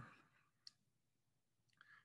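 Near silence in a pause between words, with one faint, sharp click about two-thirds of a second in and a faint short sound just before the end.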